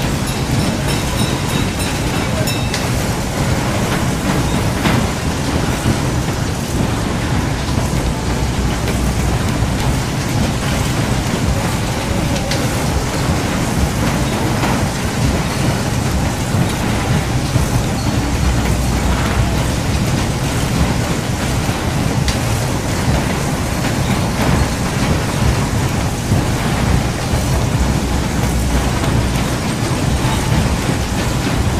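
Steady rushing noise with a heavy low rumble: wind buffeting the microphone on a moving carousel.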